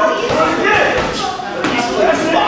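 Indistinct voices talking in a boxing gym, with a few dull thuds from boxers sparring: gloves landing and feet on the ring canvas.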